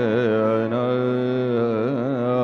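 A man's voice singing kirtan, a devotional song, holding long notes with wavering, curling ornaments. A steady low drone plays under it.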